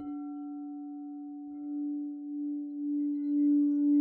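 A sustained ringing tone starts suddenly and holds, then swells and ebbs in slow pulses, growing louder toward the end.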